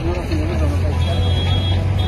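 A voice speaking briefly over a steady, fairly loud low rumble.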